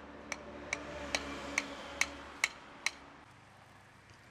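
Hammer striking a steel road guardrail post: eight evenly spaced metallic clinks, a little over two a second, that stop about three seconds in.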